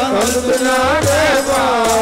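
Sikh kirtan: a voice sings long held notes that waver and bend in pitch, over steady instrumental accompaniment with a hand drum.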